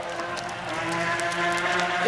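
Remote-controlled boat's small motor running with a steady, even whine.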